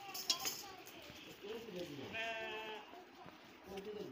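A farm animal bleating once about two seconds in, a short quavering call lasting under a second. There is also a sharp snap near the start, over faint background voices.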